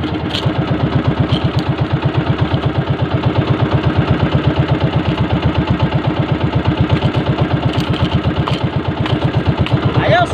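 A small outrigger fishing boat's engine running with a steady chugging beat of about seven pulses a second.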